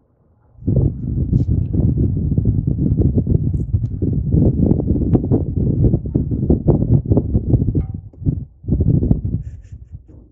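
Loud, ragged low rumbling of wind buffeting the microphone. It starts under a second in, runs until about eight seconds, and comes back in a short gust near the end.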